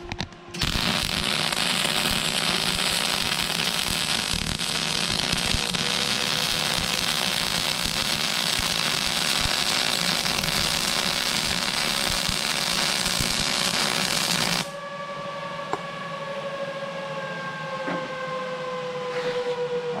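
Lincoln Power MIG 260 welding a bead with .035 solid wire under argon/CO2 shielding gas on quarter-inch steel at 21 volts and 370 inches per minute wire speed: a steady, loud crackle of the arc that starts about half a second in and cuts off suddenly after about fourteen seconds. After the arc stops, a quieter steady hum of a few tones slowly falls in pitch.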